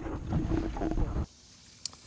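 Wind buffeting the microphone with a dense low rumble from out on the open water, cutting off abruptly just over a second in. Then a quiet background with a single sharp click near the end.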